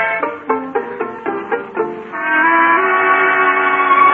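Radio-show music bridge with brass: a quick run of about eight short, separate notes, then a held chord from about two seconds in, marking a scene change.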